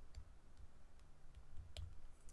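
Faint scattered clicks and taps of a stylus on a tablet screen during handwriting, over a low steady room rumble.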